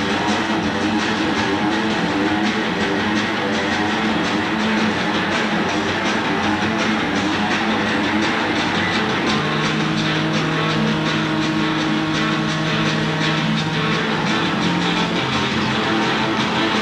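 Live late-1960s rock band playing: distorted electric guitars over a steady drum beat, with a long held low note from about nine seconds in to fourteen.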